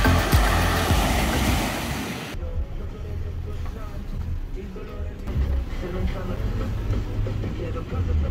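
Small waves breaking and washing over a pebble beach, cutting off suddenly about two seconds in. What follows is a quieter low rumble with faint distant voices.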